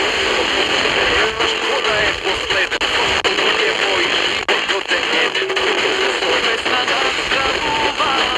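Weak, distant FM station on a Tecsun PL-310ET portable radio's speaker, tuned to 92.3 MHz: music comes through under steady static hiss.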